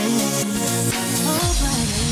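Electronic dance remix in the Brazilian bass style, with a steady beat and sustained synth notes; about one and a half seconds in, a bass note slides down in pitch into a heavy, deep bass.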